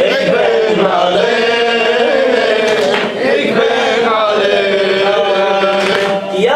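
A man chanting an Arabic Shia mourning elegy (rouwzang) solo into a microphone, in long held, wavering notes.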